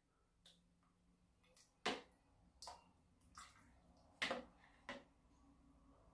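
About five short, soft clicks and taps over near silence: a metal spoon knocking and scraping against a plastic bowl as oil is spooned out. The loudest tap comes about two seconds in.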